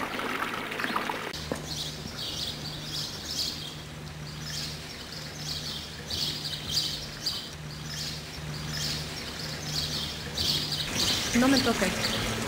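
Small birds chirping in short, repeated calls, over the steady trickle of a small courtyard fountain.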